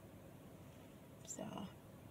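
A woman's voice saying one soft word, "So", a little over a second in; otherwise quiet.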